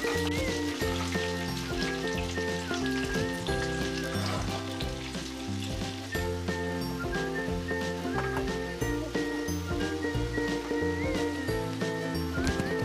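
Sliced onions frying in hot oil in a kadai, sizzling steadily, with a metal slotted spoon stirring and scraping the pan near the start and near the end. Light background music plays throughout.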